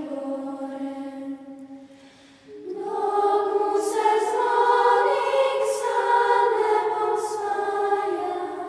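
Children's church choir singing a slow Orthodox hymn-like song in long held notes. One phrase fades out about two seconds in, and a louder new phrase begins just under three seconds in.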